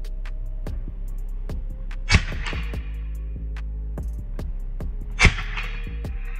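Two shots from a suppressed .25-calibre Edgun Leshy PCP air rifle, about three seconds apart, each a sharp crack over background music with a steady low beat.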